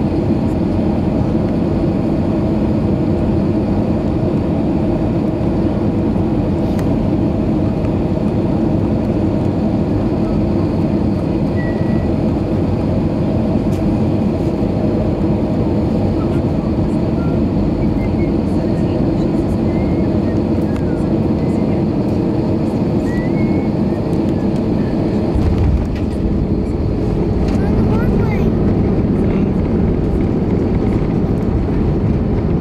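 Airbus A320 cabin noise on final approach: a steady rumble of engines and airflow heard from a window seat by the wing. About 25 seconds in the sound changes suddenly as the wheels touch down, and a somewhat louder rumble follows as the jet rolls down the runway.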